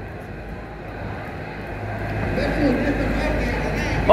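Steady low hum and rumble of a large gym's background noise, growing somewhat louder partway through, with faint distant voices in the middle.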